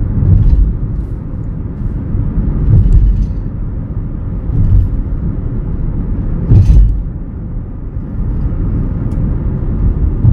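Steady low road and engine rumble heard from inside a Chevrolet car's cabin while it drives at road speed. A few dull thumps stand out, the loudest about two-thirds of the way through.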